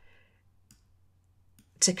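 Two faint computer mouse clicks about a second apart in a quiet room. A woman's voice starts again near the end.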